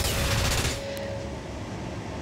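Broadcast bumper transition sound effect: a sudden loud hit that fades over about a second, with a sharp click about a second in and a low rumble trailing after.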